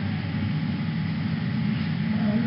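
Steady low mechanical rumble like a vehicle running, a sound effect laid under the animation of a cart being pushed along.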